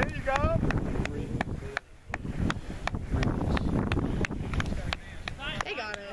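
Wind buffeting the camera microphone in a low rumble, with a high shout at the start and shouting voices again near the end.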